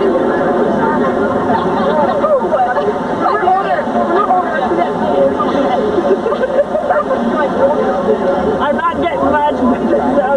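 Chatter of a crowd of young people talking at once: many overlapping voices, none clear enough to make out.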